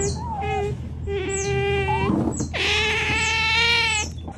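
Otter giving three long, steady-pitched whining squeals with short gaps between them, the last and longest lasting over a second, over a low steady hum.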